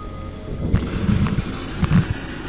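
SB7 spirit box sweeping through radio frequencies: a choppy hiss of white-noise static starts about half a second in, with louder low bursts around the middle and near the end.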